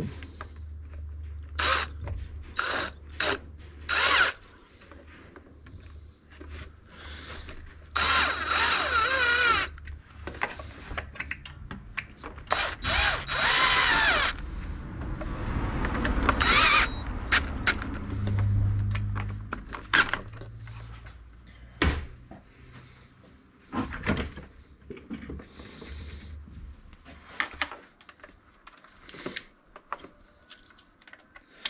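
Cordless drill-driver running in several short whirring bursts on a two-stroke brush cutter's carburetor mounting screws, the longest lasting about a second and a half, with clicks and knocks of small metal parts being handled in between.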